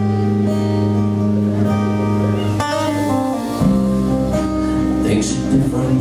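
Live band instrumental passage: strummed steel-string acoustic guitar over bass guitar and drums, with the chord and bass note changing about halfway through and cymbal hits near the end.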